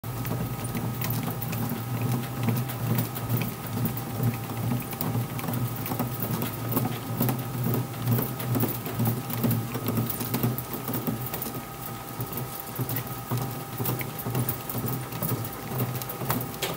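Composite softball bat turning between the pressure rollers of a hand-operated bat-rolling machine: a steady rumble with a constant stream of small clicks and ticks.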